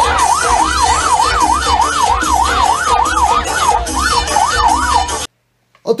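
Police patrol siren wailing fast, its pitch sweeping up and down about twice a second over loud street noise. It cuts off suddenly about five seconds in.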